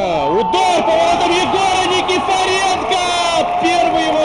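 Football goal celebration: voices holding a long, wavering, drawn-out shout over crowd noise.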